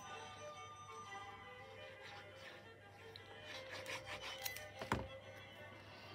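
Quiet background music, with faint rubbing and tapping of cardstock on the work mat and one soft thunk about five seconds in, as a card layer is laid and pressed flat onto a card base.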